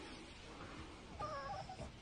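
Boston Terrier giving a short, faint, wavering whine a little over a second in, over low room noise.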